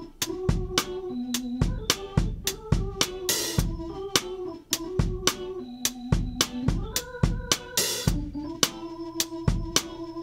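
A soloed mono drum track plays a steady, simple soul beat of kick drum and a Ludwig Supraphonic snare. It was recorded with a low, compressed ribbon overhead mic and a mic beside the kick, summed to one track. A cymbal crashes twice, about three and a half and eight seconds in.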